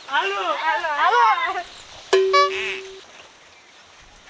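Several voices calling out a short repeated cry with swooping pitch, chant-like. About two seconds in there is a short, steady, single-pitched tone lasting about a second.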